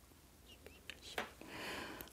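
Faint, quiet stretch with a few small mouth clicks, then a soft breath drawn in near the end, just before speaking.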